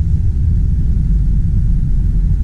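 A car driving along a wet road, heard from inside the cabin: a steady low rumble.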